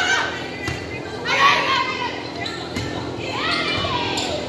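Players' high voices calling out during a volleyball rally, with a couple of sharp smacks of the ball being hit, echoing in a gymnasium.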